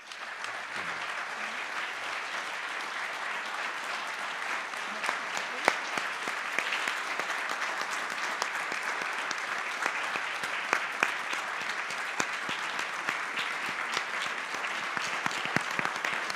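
Audience applauding: dense, steady clapping that breaks out all at once and keeps up without letting off.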